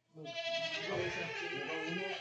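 A goat giving one long, loud bleat of about two seconds. It comes from a doe that has just kidded and that the people with her call not happy.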